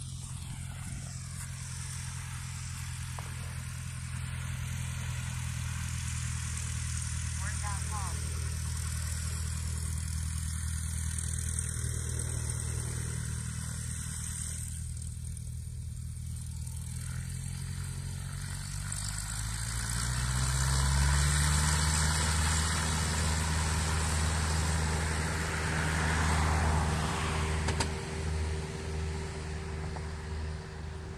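Piston engine of a high-wing single-engine light plane running steadily, then rising in pitch and getting louder about 20 seconds in as it goes to full power for the takeoff roll.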